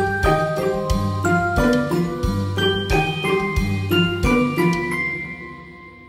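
Background music: a quick melody of short, plucked-sounding notes, about three a second, over a bass line, fading out near the end.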